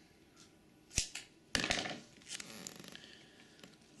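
Hands pressing a duct-tape strap down onto taped cardboard armour plates: a sharp tap about a second in, then a short crinkling burst and a few fainter rustles.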